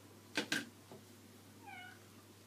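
Two sharp clicks in quick succession just under half a second in, then a short cat meow near the end.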